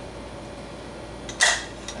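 Quiet steady room hum, with one short, sharp click about one and a half seconds in.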